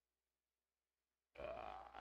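Silence, then about a second and a half in a man's single drawn-out "uh" of hesitation.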